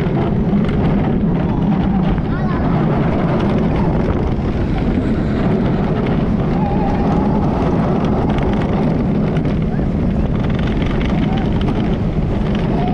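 Steady, loud wind rush on the microphone of a camera riding a steel roller coaster at speed, over the low rumble of the train on its track, with faint rider voices wavering in the background in the second half.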